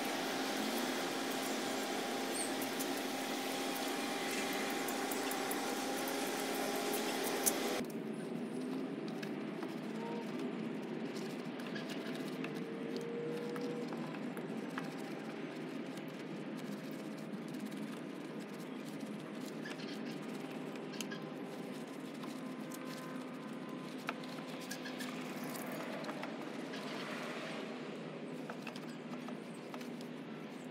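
A steady motor hum with a hiss of spraying water, cut off abruptly about eight seconds in. After that, a quieter hum with scattered small clicks as a wheel brush scrubs a car's chrome rim.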